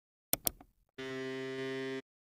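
A quick double mouse click, then a steady buzzy tone lasting about a second that cuts off abruptly.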